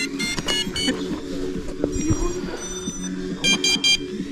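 Short, sharp electronic beeps from FPV racing-drone gear: four quick beeps at the start, a couple of thin steady tones about two seconds in, and four more quick beeps near the end.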